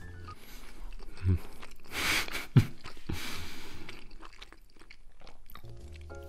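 Chewing a mouthful of omelette rice close to the microphone: irregular wet mouth noises with two short, sharper smacks, one about a second in and a louder one about two and a half seconds in.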